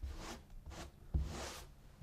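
Damp sponge wiping excess paste off freshly hung wallpaper: a few soft swishing strokes, with a light knock about a second in.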